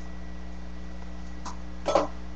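Steady low electrical hum and room noise, with a faint blip about one and a half seconds in and a brief louder sound just before the end.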